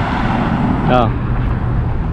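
Road traffic: cars driving past, a steady rumble with tyre noise, and a short spoken word about a second in.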